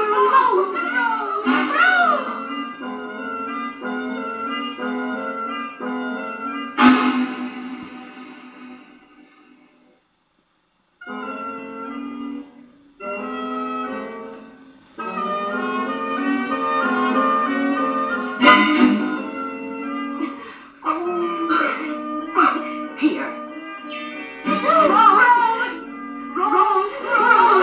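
Film soundtrack music from a 16mm print, played on a Bell & Howell projector: held chords with a wavering higher melody. It fades to a brief silence about ten seconds in, then comes back.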